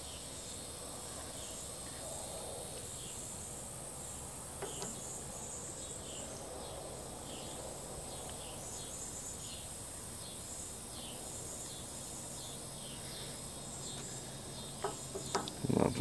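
Faint background of insects chirping in a steady rhythm, a little more than one chirp a second, with a few sharp clicks near the end.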